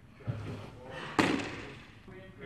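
A low thud from the pitcher's front foot landing on the portable mound, then, about a second in, a sharp smack as the pitched baseball hits its target. The smack is the loudest sound.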